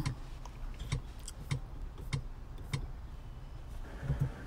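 Irregular soft clicks from the Mercedes MBUX infotainment controls, about half a dozen spread over a few seconds, as the menus are worked. Under them runs a low steady hum in the car cabin.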